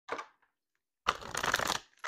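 A deck of tarot cards being shuffled: a short flick of cards at the start, then a denser, louder shuffle lasting just under a second about halfway in.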